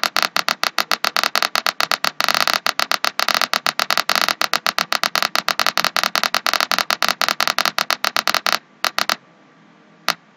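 Buzzer tone from the simulated speaker in a Proteus Arduino gas-leak-detector circuit, sounding the leak alarm through the computer. The tone comes out chopped into rapid stutters, about seven to eight a second, because the simulation runs slower than real time. It stops near the end after a brief last burst.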